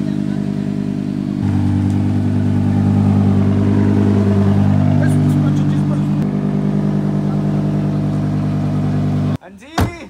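Lamborghini Huracán V10 engine running close by at low revs, rising briefly in pitch around the middle and settling again. It cuts off suddenly near the end, followed by a single sharp knock.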